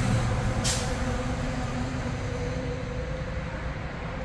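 Road traffic going by on the street: a passing vehicle's engine hum slowly fading away, with a short hiss a little under a second in.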